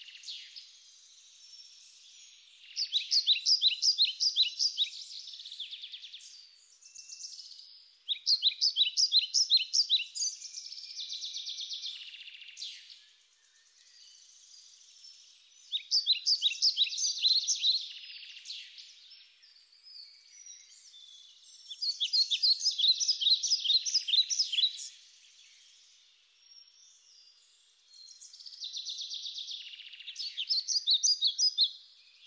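A songbird singing in the trees: short phrases of quick repeated notes, each about two to three seconds long, come roughly every six seconds, with fainter song from other birds between them. Four full phrases are heard, and a fifth begins near the end.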